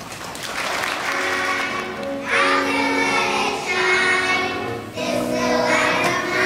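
A children's choir singing with piano accompaniment.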